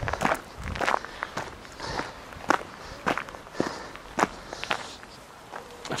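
Footsteps walking at a steady pace on a gravel path, about two steps a second.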